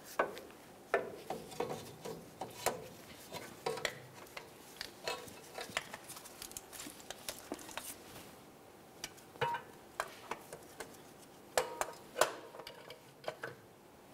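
Irregular light metallic clinks and knocks as a replacement starter motor is handled and fitted up against the transmission bell housing, its metal body tapping the surrounding metal.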